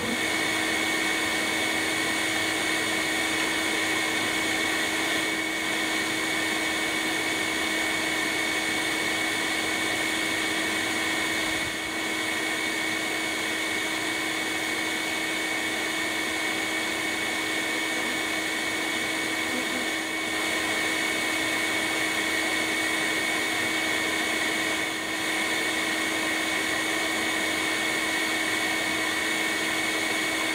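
Bee vacuum running steadily with a constant motor whine as its hose sucks live honey bees off a comb cluster. It switches on right at the start, with a few brief dips in level.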